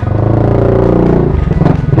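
Yamaha NMAX scooter's single-cylinder engine, bored out to 180cc with a racing set-up, pulling away under throttle. The engine note drops away about a second and a half in.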